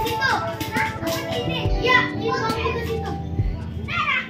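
Children's voices calling out while playing, over music with held tones and a low thump about every couple of seconds.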